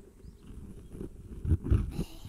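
A low, rumbling cat-like purr voiced close to the microphone, coming and going and swelling louder about one and a half seconds in.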